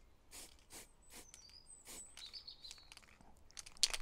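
A few short, faint hisses from an aerosol spray-paint can being tapped in quick, irregular puffs, with birds chirping thinly in the background.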